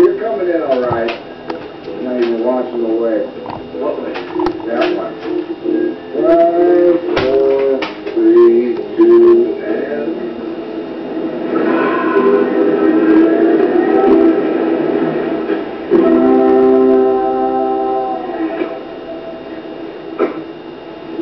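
Sound from a television playing a film: music with guitar and snatches of voices, and a held chord of several notes near the end.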